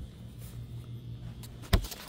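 Handling noise from a hand-held phone: one sharp knock about three-quarters of the way through, over a steady low hum.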